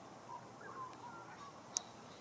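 Faint outdoor background with distant birds giving short, high calls every so often, and one sharp click near the end.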